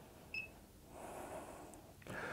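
A faint, short electronic blip about a third of a second in, the tap sound of a Samsung tablet's touchscreen, followed by a soft breath.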